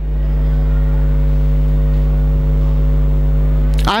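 Loud, steady electrical mains hum with a buzzy ladder of overtones, the kind of ground-loop hum picked up in a microphone's sound system. It cuts off abruptly near the end.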